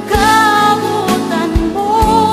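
A Bisaya Christian worship song: a sung vocal melody with held, wavering notes over a band backing with a steady drum beat.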